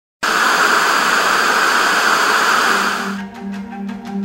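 Loud, steady television-static hiss. About three seconds in it fades out as music with repeated low notes and clicks comes in.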